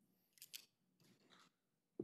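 Near silence with faint paper handling at a microphone: two quick, crisp ticks about half a second in, then a soft rustle.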